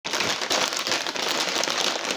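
Pringles Mingles snack bags crinkling as they are handled and moved: a dense, continuous run of small crackles.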